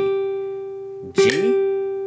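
Nylon-string classical guitar playing single notes: a G is ringing, then the G is plucked again about a second in and rings on at the same pitch.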